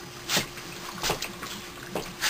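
Hot frying pan over an HHO torch burner sizzling in three short spits about three quarters of a second apart, over a steady faint hiss: water and oil hitting the hot metal as the pan starts to smoke.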